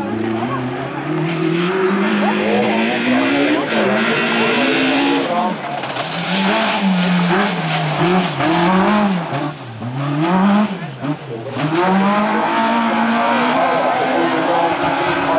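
Peugeot 206 hillclimb car's engine under hard throttle close by, its note rising and falling again and again as the driver accelerates, lifts and changes gear through the turns. A hiss of tyres on the loose gravel surface runs under it.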